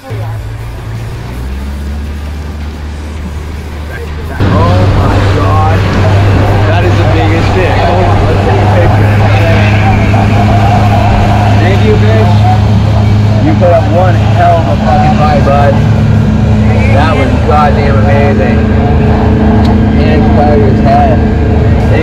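Outboard motor of a small fishing panga running steadily, then throttled up about four seconds in to a much louder, steady drone as the boat gets under way.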